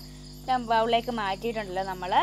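Crickets chirping steadily, with a girl talking over them from about half a second in.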